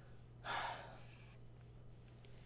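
A man's single short, breathy gasp, heard about half a second in, over a faint steady hum.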